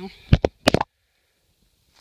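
Several sharp knocks and scrapes of handling, as a shotgun is laid down and the camera is moved over leaf litter. The sound then cuts out completely for about a second.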